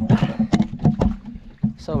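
Quick, irregular knocks and clatter as a monofilament gill net and its catch are hauled and handled over a boat's rail, over a low steady hum.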